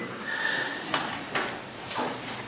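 Two short sharp clicks about a second in, roughly half a second apart, over quiet room tone in a hall, with a faint brief tone just before them.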